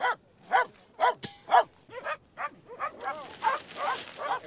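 A dog barking in a string of short, repeated yaps, two or three a second, with a single sharp knock about a second in.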